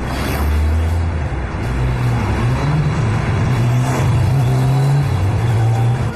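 A car driving past close to the ground-level camera, over background music that carries a low, stepping bass line.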